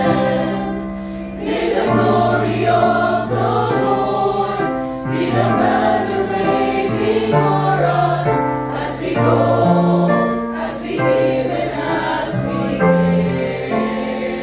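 Mixed SATB church choir, women and men, singing a hymn in parts over a recorded accompaniment track.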